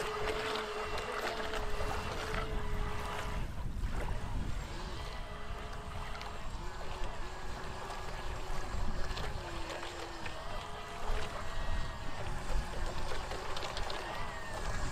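Electric motors and propellers of a remote-controlled model boat (a 3D-printed rubber duck) running in the water: a steady whine that wavers, dips and shifts in pitch as the throttle changes, over a low rumble of wind on the microphone.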